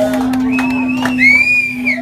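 One steady note held on an amplified instrument through the band's gear, with a crowd cheering over it and a high whooping shout about a second in.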